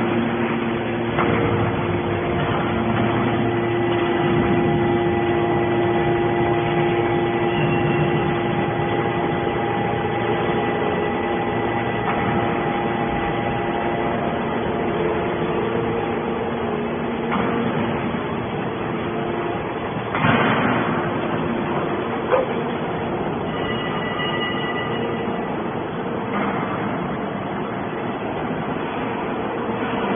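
Hydraulic scrap metal baler running: a steady machine hum with a held whine from its hydraulic power unit, the tones shifting as the press moves through its cycle. A brief rush of noise comes about twenty seconds in, and a single sharp knock follows a couple of seconds later.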